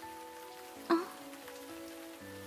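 Steady rain falling, a rain sound effect mixed under soft background music that holds long, steady notes.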